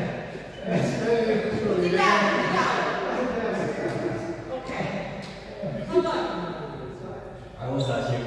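Indistinct voices of people talking in a large hall, with one sharp knock about six seconds in.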